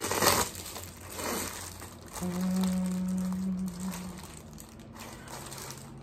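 Plastic mailer bag being torn open and crinkled, loudest in a burst right at the start with a smaller rustle about a second later. About two seconds in, a steady hummed tone holds for about two seconds.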